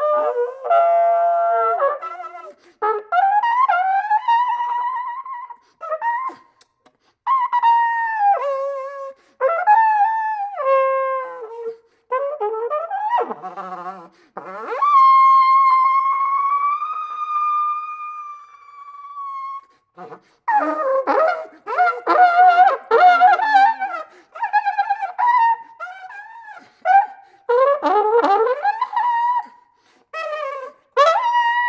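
Solo flugelhorn playing a contemporary concert piece in short phrases broken by brief silences, the notes often bending and sliding in pitch. A single note is held for about five seconds in the middle, followed by rapid flurries of notes near the end.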